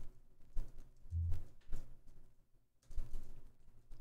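Faint computer keyboard typing: a few scattered keystrokes, with a brief low hum about a second in.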